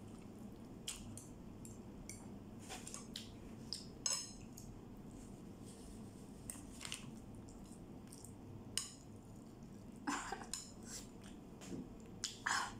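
Chopsticks clicking and scraping against a plate of instant noodles, in scattered short, faint taps, with a few brief slurping and chewing sounds of eating noodles, the loudest of them near the end.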